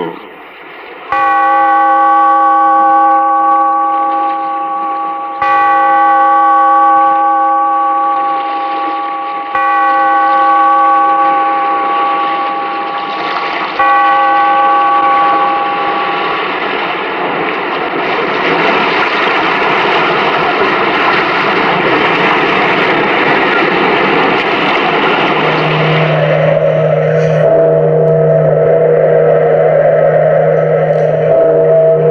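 A large bell tolls four times, about four seconds apart, each stroke ringing on as it fades. Then the sound of sea surf swells and rushes, and a low, steady musical chord comes in near the end.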